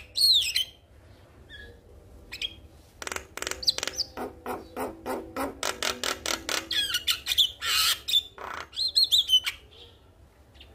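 Male Javan myna singing: a gliding whistled call at the start, then after a short lull a fast run of sharp clicking notes, a harsh raspy note, and more looping whistles near the end.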